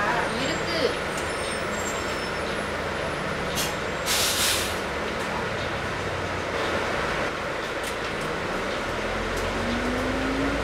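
Volvo Olympian double-decker bus idling, heard from inside, with a short burst of air hiss from its air brakes about four seconds in. Near the end the engine note rises steadily as the bus starts to pull away.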